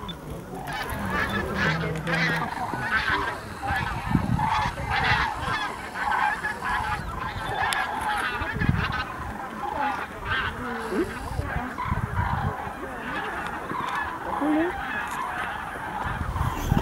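Flocks of common cranes (Grus grus) calling in flight overhead as they fly in to roost: a dense, continuous chorus of many overlapping trumpeting calls.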